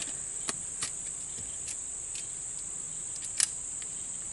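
Small metallic clicks of a 1917 Smith & Wesson .45 ACP revolver being reloaded with a moon clip. There are several faint clicks and one sharper click about three and a half seconds in, over the steady high-pitched chirring of insects.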